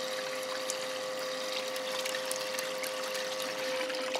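Water running steadily through a small recirculating sluice box with Vortex Trap riffles, with a steady hum from its small electric water pump.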